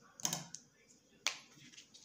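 A short handling rustle, then a single sharp snip a little over a second in: small scissors cutting the embroidery thread after it has been knotted off.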